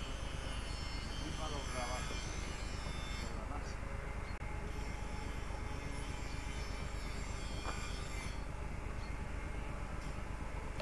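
Helicopter turbine engine running steadily on the ground, a continuous high whine over a low rumble.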